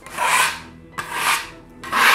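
Steel spatula scraping lightly over a painted wall in short strokes about a second apart, knocking off dried paint lumps.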